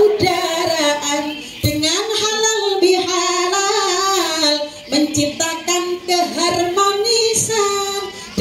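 A woman singing solo into a handheld microphone: long drawn-out notes with a wavering pitch, in phrases broken by short pauses about two and five seconds in.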